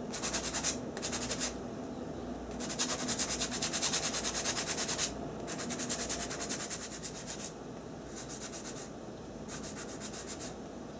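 A 220-grit sanding block rubbed quickly back and forth over a small dried handmade pendant, about six strokes a second, in several runs with short pauses between; the longest runs fall in the middle.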